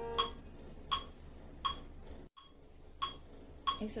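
The last piano notes die away, leaving a metronome ticking steadily about once every 0.7 seconds, roughly 85 beats a minute. There is a brief dropout about halfway through.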